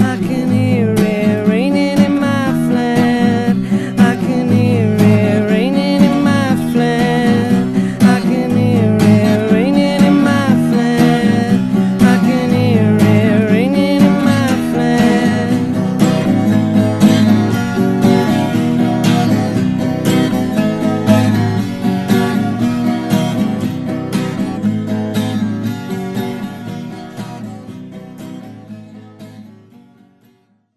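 Strummed acoustic guitar playing the instrumental ending of a singer-songwriter's song, with a wavering melody line over the chords for roughly the first half. The music fades out over the last several seconds.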